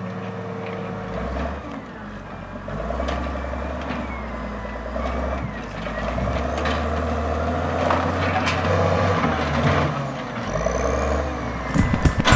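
Diesel engine of a wheel-mounted log loader running and working, its low note shifting in steps as it moves, with scattered knocks and a couple of short squeals from the machine.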